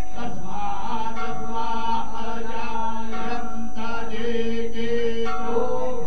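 Devotional Hindu chanting during a ritual bathing (abhishek) of a deity, with voices holding long, steady notes that change pitch every second or so.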